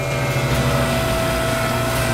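A powered weld bend tester running with a steady machine hum and a constant mid-pitched whine, idling after the ram has bent and ejected the test coupon.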